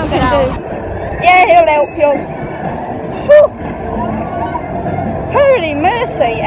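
Short bursts of girls' voices, some high and gliding like exclamations, over a steady rumbling background noise.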